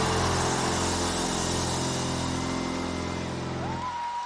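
A live rock band's final chord, with bass and electric guitar held and ringing out, slowly fading as the song ends. Near the end a single high tone rises and holds briefly.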